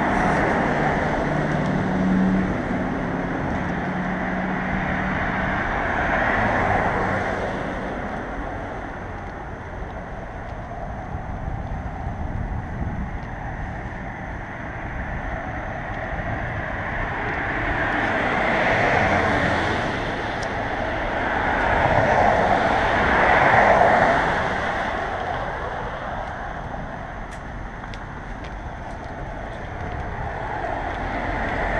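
Road traffic on the street alongside: cars passing one after another, a steady rush of tyre and engine noise that swells and fades several times, loudest a little over two-thirds of the way through.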